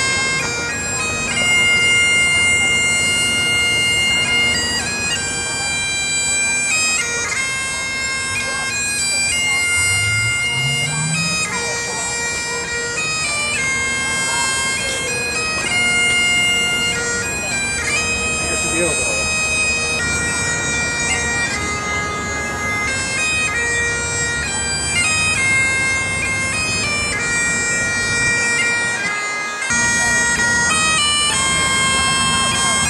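Highland bagpipes playing a tune: the chanter's melody steps from note to note over a steady, unbroken drone.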